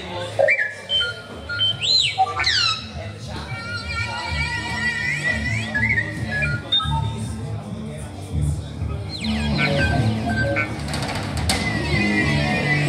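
Live instrumental rock fusion band starting a tune: sustained low bass and keyboard notes that step from pitch to pitch, with high swooping pitch bends sliding over them in the first few seconds and again near the end.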